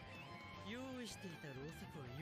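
Faint subtitled anime dialogue: a character speaking with dramatic pitch swings over quiet background music.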